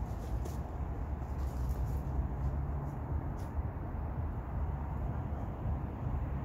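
Steady low outdoor rumble, with a few faint crackles and rustles of footsteps through dry leaf litter in the first few seconds as a person walks away.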